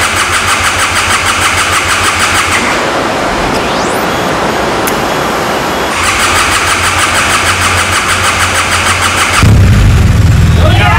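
Starter cranking the new liquid-cooled BMW R 1200 GS boxer-twin engine on a test bench: an even, rhythmic chugging of about four pulses a second that weakens for a few seconds midway. Near the end the engine catches and runs, suddenly louder and deeper.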